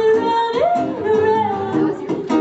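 An operatically trained female voice singing long held notes that glide up and down in pitch, over a strummed acoustic guitar.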